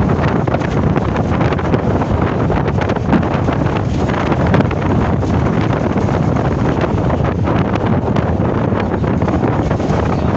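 Steady, loud wind rushing and buffeting over a phone's microphone as it is carried along in a moving vehicle, with low road rumble underneath.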